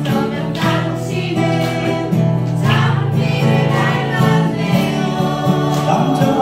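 A man singing a Korean folk ballad to his own strummed steel-string acoustic guitar, with steady strums under the vocal line.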